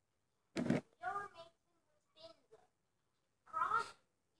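A few short, high, voice-like calls with bending pitch, in about four separate bursts, the last near the end.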